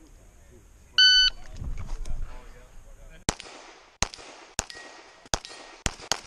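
Shot timer start beep about a second in, then five pistol shots from a Sig Sauer 1911 MAX firing .40 S&W major loads, the first about two seconds after the beep and the rest about half a second to a second apart, each with a short ringing echo.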